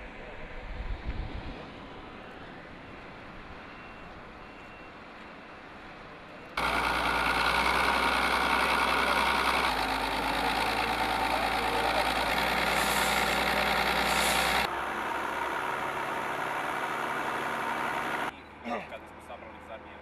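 Construction-site machinery noise: a steady engine running, loud and level, that starts and stops abruptly in blocks, with a dull thump about a second in.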